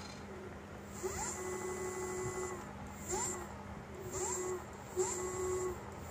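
Electric scooter's hub motor whining in repeated throttle bursts. Each burst rises in pitch and then holds steady: a long one about a second in, then shorter ones about once a second. A steady low hum runs underneath.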